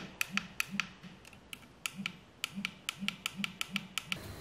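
Series of small plastic push-button clicks on a micro RC car's transmitter, pressed over and over, a few times a second, to switch the car's headlights and ambient lights.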